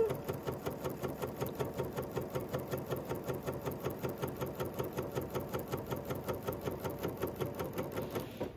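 Bernina sewing machine stitching a seam through cotton quilt fabric at a steady speed, its needle strokes making a fast, even rhythm.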